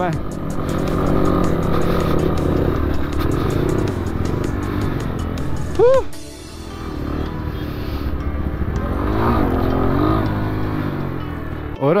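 Dirt bike engine running on the move, with its engine speed rising and falling about nine seconds in.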